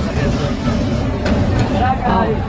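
Street-stall noise: voices talking over a steady low rumble, with a few sharp clicks of a metal spatula on the flat steel griddle.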